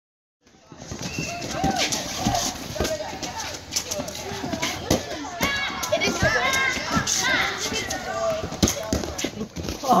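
A group of children and teenagers shouting and calling out over one another during a game of gaga ball, with high yells bunched a little past the middle. Short sharp slaps of the ball being struck and hitting the pit walls break through the voices now and then.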